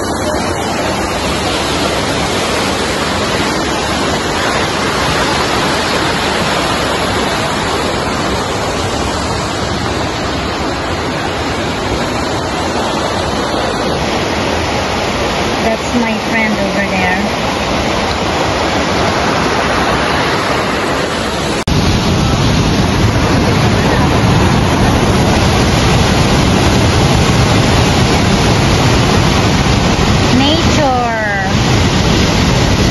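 Steady, loud rush of a fast mountain creek's water pouring through a narrow rock canyon, growing louder about two-thirds of the way in.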